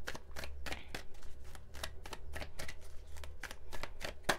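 Tarot cards being shuffled by hand: a fast, irregular run of light papery clicks and flicks.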